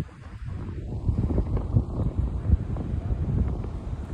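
Wind buffeting the phone's microphone outdoors, an irregular gusty low rumble with no clear tones.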